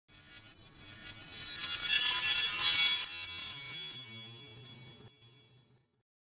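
Intro logo sting: a bright, shimmering swell that builds for about three seconds and then breaks off. A lower held tone is left behind and fades out before the logo finishes forming.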